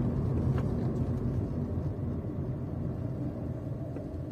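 Steady low rumble of a moving car's engine and road noise heard from inside the cabin, easing off slightly toward the end.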